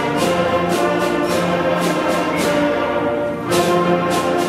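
Sixth-grade beginning concert band playing together: flutes and brass (trumpets, trombones, low brass) holding chords, with percussion strokes roughly every half second marking the beat. The band briefly thins out near the end, then comes back in at full strength.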